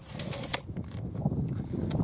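Tape measure being retracted: a few quick, sharp clicks in the first half second, then low outdoor background.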